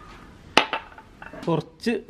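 A sharp clink of a drinking glass about half a second in, followed by a couple of fainter clicks near the end.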